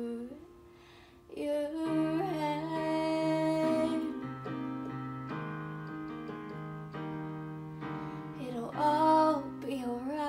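Electronic keyboard with a piano voice playing slow, held chords, with a woman's voice singing long sliding notes over it. The sound dips to a brief hush just after the start before the chords resume.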